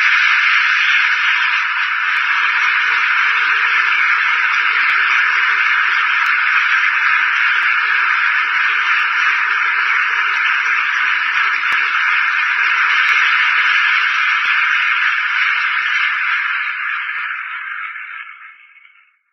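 Audience applauding steadily, sounding thin and tinny, then fading out near the end.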